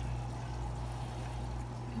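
Steady trickle of running water with a constant low hum, typical of a reptile enclosure's water filter running.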